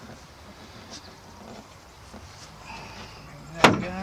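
Plywood storage drawer sliding out from under a van bench seat with faint rubbing and a few small knocks, then one sharp wooden knock near the end as the hinged plywood bench top is folded out.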